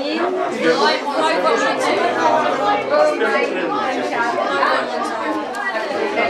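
Many people talking at once: a seated audience chatting among themselves, with overlapping women's and men's voices and no single speaker standing out.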